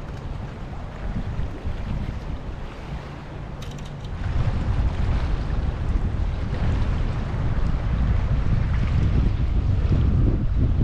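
Wind buffeting the microphone beside open river water, a gusty low rumble that gets louder about four seconds in.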